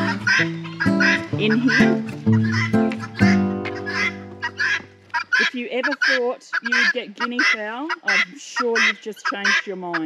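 A flock of helmeted guineafowl calling over and over in quick, harsh notes. Background music with a steady bass runs under the first half and stops about halfway through.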